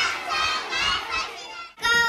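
Many young children's voices overlapping in a classroom. Near the end the sound drops out for an instant, then one child's high voice comes in clearly.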